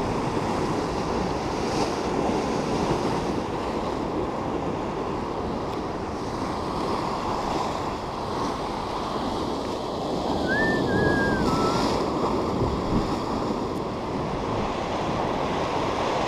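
Sea surf breaking and washing over shoreline rocks, with wind buffeting the microphone, swelling and easing. About ten seconds in comes a short thin call that rises and then falls.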